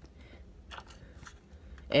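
Faint scattered clicks and rustles of hands handling and turning a 1/24 scale diecast model car. Speech starts right at the end.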